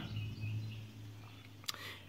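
Quiet background: a faint steady low hum with a few faint chirps, and a single short click near the end.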